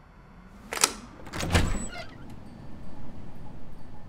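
A door being unlatched and opened: a sharp latch click about a second in, then a louder thud with a rattle as the door comes open.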